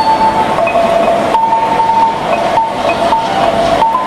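Rondalla ensemble of bandurrias, octavinas and guitars playing a slow melody in long held notes that step from one pitch to the next.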